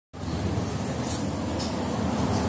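Steady low vehicle rumble.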